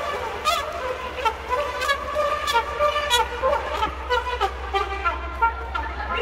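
Trumpet playing a melody of short held notes, over a regular beat of sharp percussive hits.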